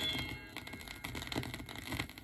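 The last chord of the record dies away in the first half second, then only the stylus's surface noise remains: faint crackle and scattered clicks from the vinyl single as the song ends.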